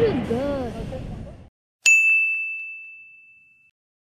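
A single bright ding sound effect, one bell-like tone that rings out and fades over nearly two seconds, marking a title card. Before it, outdoor background noise fades out to dead silence in the first second and a half.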